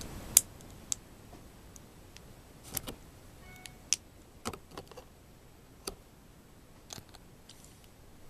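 Small plastic Lego pieces being handled and pressed together: scattered sharp clicks and taps at irregular intervals, the loudest one near the start.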